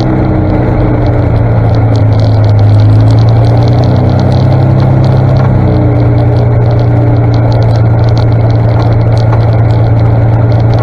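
1959 Daimler Ferret armoured scout car's Rolls-Royce straight-six petrol engine running at a steady low road speed: a loud, even drone that dips slightly in pitch a couple of seconds in and comes back up, with light rapid ticking over it.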